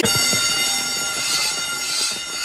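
A loud, steady buzzing tone with many overtones, starting abruptly and holding at one pitch: an alarm-like buzzer sound effect in a cartoon clip.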